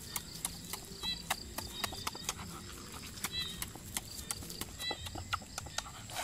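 Crunching and chewing of crispy pork belly crackling: an irregular run of sharp crackly clicks, several a second.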